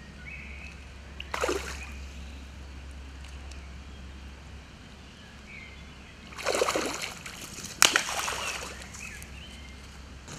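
Hooked trout splashing at the surface as it is played on a fly line: a short splash about a second and a half in, then two more close together near the end, the last one the sharpest.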